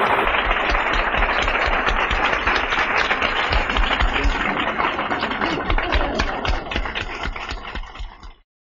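Large audience applauding steadily, a dense patter of many hands clapping.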